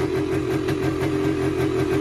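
1978 Yamaha DT250's single-cylinder two-stroke engine idling steadily but high, a high idle that stays with the choke off and that the owner has not yet traced.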